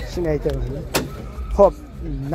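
Men's voices talking, with one sharp click about a second in, most likely the damaged bonnet of a Daewoo Nexia being pressed down onto its latch.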